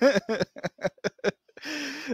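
A man laughing: a run of short, quick chuckles that taper off over about a second and a half.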